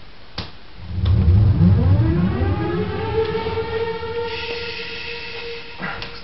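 Recorded siren-like tone played back through room speakers: it winds up in pitch over about two seconds, then holds as a steady note. A single click comes just before it starts.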